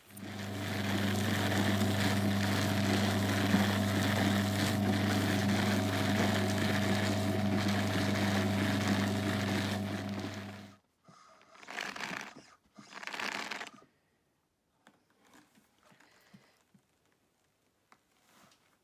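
Motorised drum carder running with a steady electric hum, its large wool-covered drum spinning fast as a batt builds up; the motor cuts off suddenly about eleven seconds in. Two brief rustles follow as the wool on the drum is handled.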